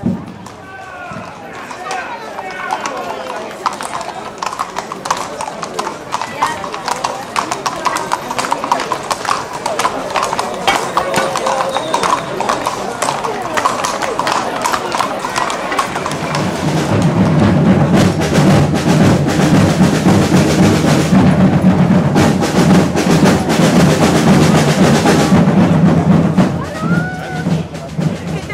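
Horses' hooves clip-clopping on cobblestones over crowd chatter. About sixteen seconds in, louder drumming and music set in.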